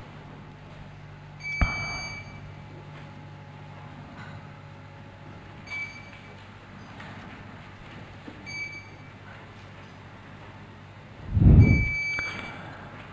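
Short electronic beeps from the chamber's voting system, four single high tones a few seconds apart, over a low steady hum while the vote is taken. Near the end there is a loud, low bump close to the microphone.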